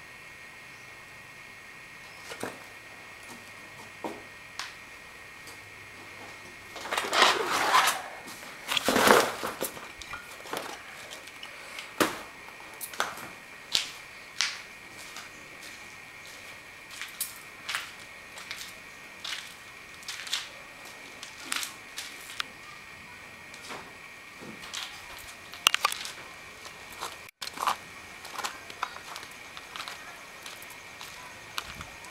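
Footsteps crunching over broken concrete and debris littering the floor of an earthquake-damaged house. There are two louder grinding crunches about seven and nine seconds in, then sharp steps at a walking pace.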